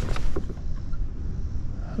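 Wind rumbling on the microphone, with a few faint clicks near the start.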